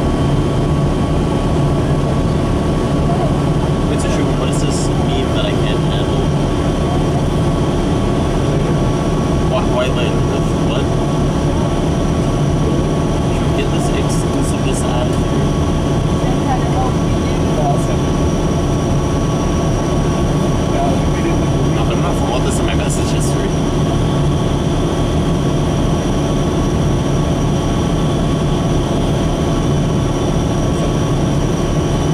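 Inside a 2003 New Flyer DE40LF diesel-electric hybrid bus (Cummins ISB diesel with Allison EP40 hybrid drive) on the move: a steady drone with road noise and a constant high whine, and a few brief rattles.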